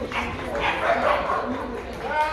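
A dog barking, over people talking in the background.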